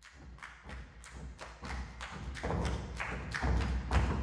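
Percussion ensemble playing a steady, quick pulse of strikes, about four a second, with deep thuds underneath, growing louder.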